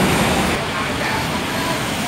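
Steady roar of road traffic, a little louder at the start and then holding even.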